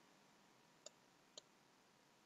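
Near silence with two faint computer mouse clicks, about half a second apart.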